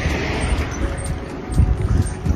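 Wind noise on the microphone and road rumble from a moving bicycle, a steady low rushing. Faint music with an even, ticking beat plays along with it.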